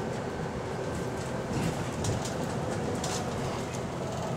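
Interior noise of a Wright-bodied Volvo double-decker bus on the move: a steady rumble of engine and road, with a couple of brief rattles from the fittings.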